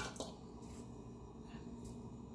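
A couple of faint, light clicks of a small metal spoon at the very start as crushed red chili flakes are shaken from it onto raw mince in a stainless steel bowl, then faint steady room tone.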